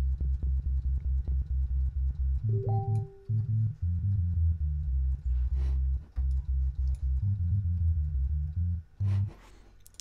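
Synthesized sub bass from Native Instruments Massive, three sine waves layered at the root, a fifth and an octave, playing fast repeated low notes that change pitch a few times and stop about a second before the end.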